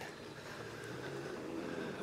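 Faint, steady whir of a push floor sweeper rolling over a concrete floor, its wheel-driven brushes spinning and sweeping debris up.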